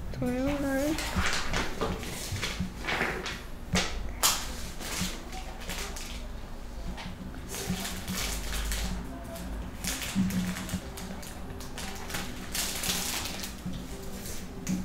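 A quiet, indistinct voice with scattered faint clicks. A short wavering vocal sound comes near the start.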